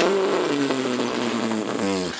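A man laughing loudly and at length, a quick run of breathy 'ha' pulses that falls gradually in pitch.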